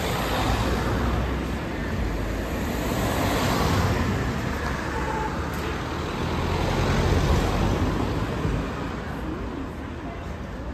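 Street traffic: cars driving past close by, their engine and tyre noise swelling and fading, loudest about four seconds in and again about seven seconds in.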